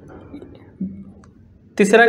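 Faint room tone with a short murmur of a man's voice a little under a second in, then his voice starts speaking near the end.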